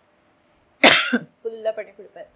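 An elderly woman coughs once into her fist, sharply, about a second in, followed by a few short voiced sounds as she clears her throat.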